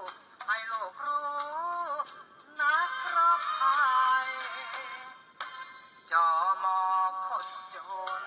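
A singer performing a Thai song over backing music, in sung phrases with two short breaks between them. The recording sounds thin, with little bass.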